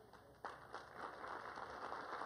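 Audience applauding, faint: a dense patter of many hands that starts suddenly about half a second in and keeps up steadily.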